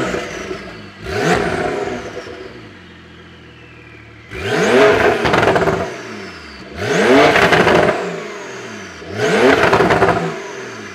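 Porsche 992 Carrera's twin-turbo flat-six revved at standstill through an aftermarket ES Motor exhaust with the particulate filters coded out, idling between blips. Four revs, each rising steeply in pitch and falling back to idle; the first is short, the later three held for about a second.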